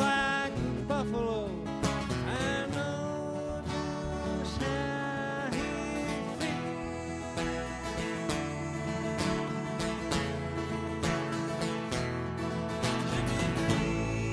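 Live acoustic band playing a country-style song: strummed acoustic guitars under held notes. A sung line trails off in the first couple of seconds, and the rest is instrumental.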